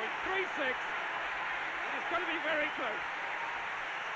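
Turned-down sound of an archive television race broadcast: a commentator speaking faintly over a steady hiss of stadium crowd noise.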